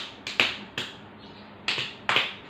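Sharp hand claps from a quick two-person hand game: three evenly spaced claps about 0.4 s apart, then a pause and two more in quick succession near the end.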